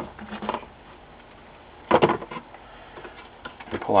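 Plastic housing and sheet-metal parts of an LCD monitor being handled during disassembly: a loud clunk about two seconds in, with lighter clicks and rattles near the start and near the end.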